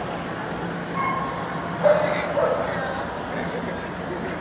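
Shetland sheepdog giving a few short, high yips while tugging, one about a second in and a louder pair around two seconds in, over the background chatter of a large hall.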